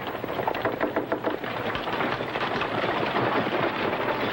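Many hurried footsteps clattering on wooden porch steps and boards as a crowd rushes in, mixed with the hoofbeats and rolling wheels of a horse-drawn wagon.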